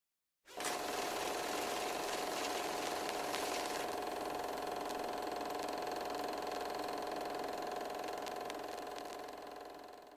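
Steady mechanical whirring with a constant hum and a few faint clicks, starting just after the beginning and fading out near the end.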